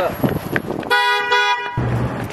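Vehicle horn honking twice about a second in: two short, steady blasts back to back, together under a second long.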